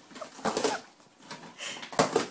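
English Springer Spaniel tearing and chewing a cardboard box, the cardboard ripping and crackling in short bursts, about half a second in and again near the end.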